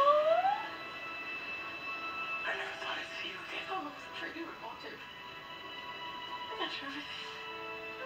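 Television drama soundtrack: a soft, sustained music score with quiet dialogue over it. Right at the start a voice rises in a brief, loud squeal.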